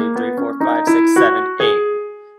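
Piano keyboard playing a G-sharp natural minor scale upward in a quick run of single notes, the top G-sharp struck near the end and left ringing as it fades.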